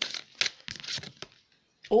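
Oracle cards being shuffled by hand: a handful of short, crisp snaps and rustles of card stock.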